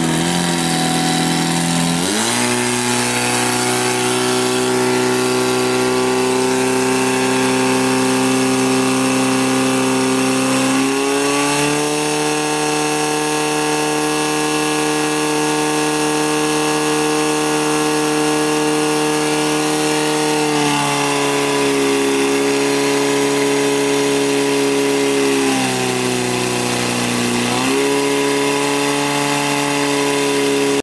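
Portable fire pump engine running hard as it pumps water to two hose lines spraying at targets. Its pitch steps up about two seconds in and again about eleven seconds in, drops twice in the last third, then climbs again near the end as the revs are adjusted.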